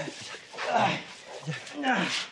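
A man grunting and huffing with effort in two breathy bursts about a second apart as he struggles free of rope bindings.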